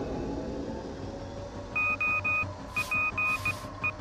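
Electronic Morse-code beeps on a console, set off by an improvised electromagnetic interference generator: groups of short, high, steady beeps switching on and off, starting about two seconds in.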